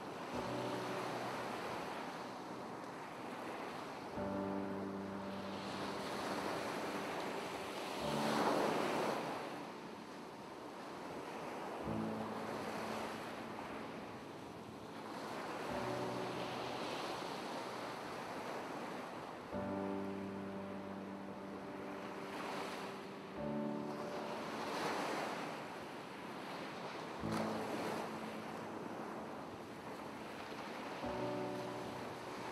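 Background music of soft, sustained chords changing about every four seconds, over the sound of ocean waves swelling in and out.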